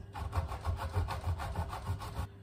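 A hard block of aged Parmesan rasped back and forth on a flat stainless-steel grater, in quick, even strokes about four or five a second.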